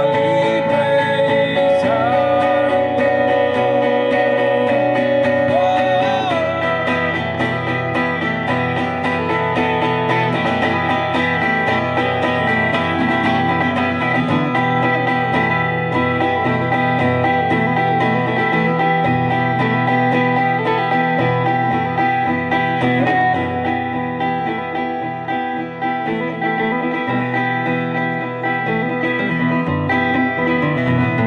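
Solo cutaway acoustic guitar played live, with the singer holding a wavering sung note over it for the first six seconds or so, then the guitar carrying on alone.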